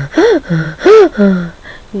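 A woman mimicking breathlessness: loud, voiced gasping breaths, the two strongest rising and falling in pitch about a third of a second and a second in. They act out being too out of breath to talk during exercise.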